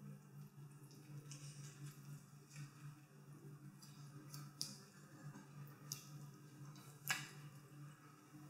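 Quiet eating sounds: a metal fork clicking and scraping in a plastic frozen-dinner tray and fettuccine being slurped and chewed, over a steady low hum. A sharper click about seven seconds in is the loudest sound.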